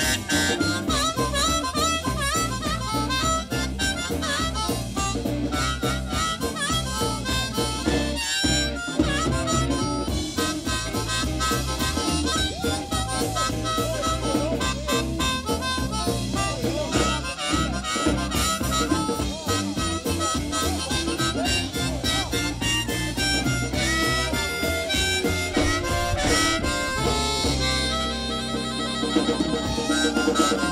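Live blues band playing with a harmonica lead, blown into a vocal microphone, over upright double bass, hollow-body electric guitar and drums keeping a steady beat.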